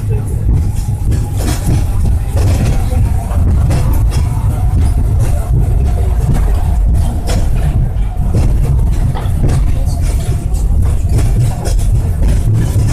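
Peak Tram cable-hauled funicular car running along its track, heard from inside: a loud, steady low rumble of the car on the rails with frequent clicks and rattles.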